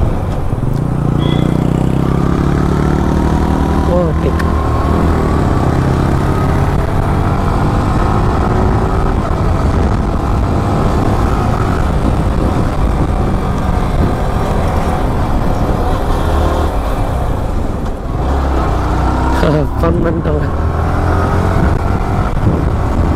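A sport motorcycle's engine running under way, its note climbing over the first few seconds, with heavy wind rumble on the rider's microphone. The engine eases briefly near the end.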